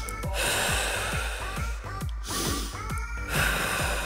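Background music with a steady beat, and two long, audible breaths out: one starting just after the start and lasting under two seconds, another starting a little past three seconds in.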